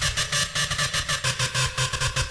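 Electronic hardcore dance track in a breakdown without its kick drum: a noisy, gritty synth pattern stutters in rapid pulses, several a second.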